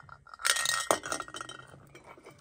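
Vintage tin Halloween noisemaker handled and shaken: a quick run of metallic clicking and clinking about half a second in, ending in one sharp click near the one-second mark.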